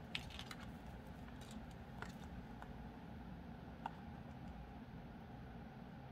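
A few faint, sharp little clicks of thin wire and seed beads against a metal hoop as the wire is handled and wrapped, over low room noise.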